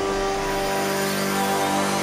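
Dramatic background score of sustained held notes, with the low bass dropping away early on.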